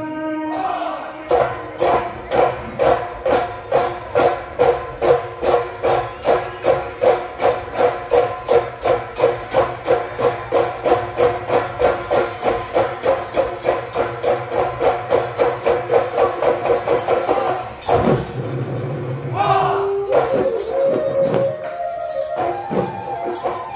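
Assamese Bihu husori music: dhol drums beaten in a fast, even rhythm of about four beats a second, with a sustained sung melody over them. The drumming stops abruptly about four seconds before the end and the voices carry on alone.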